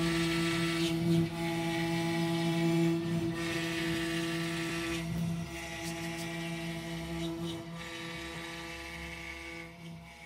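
Desktop CNC spindle running with a steady pitched hum while an end mill cuts a white block. Stretches of higher hissing cutting noise come and go every second or two as the tool works. The sound gets gradually quieter toward the end.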